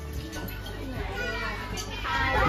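Children's voices and chatter over a steady low rumble.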